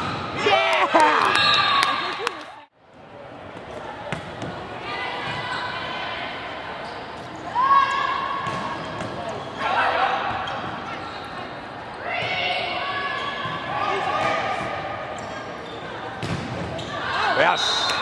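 Indoor volleyball play: the ball being struck, with players and spectators shouting and calling out at intervals. The sound drops out briefly a little under three seconds in.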